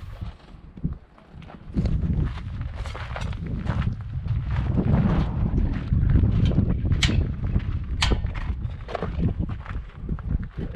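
Wind buffeting the microphone of a handheld camera as an irregular low rumble, with a few sharp clicks or knocks about seven and eight seconds in.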